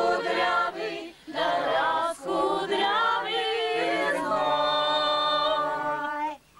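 A small group singing a folk song unaccompanied, several voices together in harmony, with short breaths between phrases. Near the end the voices hold one long steady chord.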